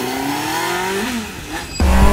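Honda Hornet 600's inline-four engine on its stock exhaust, rising steadily in pitch as the bike accelerates away, then dropping back about a second in. Just before the end, a sudden loud low rumble of wind and engine.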